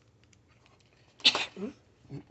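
A person sneezes once: a sharp, loud burst about a second in with a short voiced tail after it.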